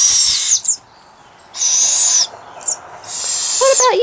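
Young owls giving raspy, hissing begging screeches, about three calls each under a second long with short gaps between. The owlets are hungry, not yet fed their breakfast.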